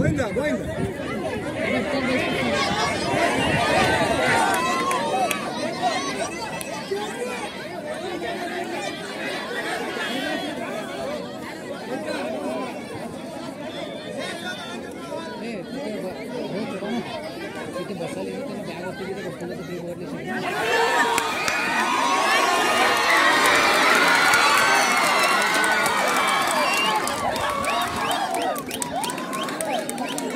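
Crowd of spectators around a kabaddi court chattering and calling out. About twenty seconds in, it jumps to louder, higher-pitched shouting and cheering that lasts until near the end.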